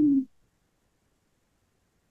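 A brief low vocal hum, slightly falling in pitch, lasting about a quarter of a second right at the start, followed by near silence.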